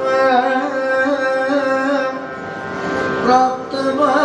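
A male voice singing a Kathakali padam in Carnatic style, long held notes with wavering ornaments over a steady drone. The phrase eases off about three seconds in and a new phrase starts just after.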